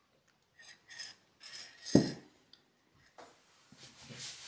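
Cross-stitch canvas being handled while a thread is finished off: a few short rustles of thread and fabric, with one sharp thump about two seconds in, the loudest sound.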